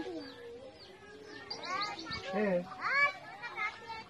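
Indistinct voices of a small outdoor crowd, children among them, with birds chirping.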